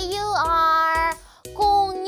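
A children's spelling song: a high voice sings the letters of 'dinosaur' in long held notes over a light music backing, with a brief break a little past halfway.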